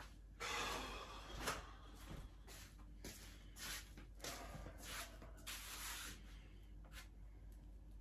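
Short scuffing and rubbing noises, with a louder scrape about half a second in and a few more scratchy bursts later.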